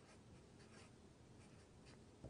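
Faint strokes of a felt-tip marker writing a short figure, close to silence.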